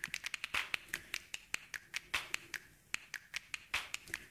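A quick, irregular run of small sharp clicks and taps, several a second.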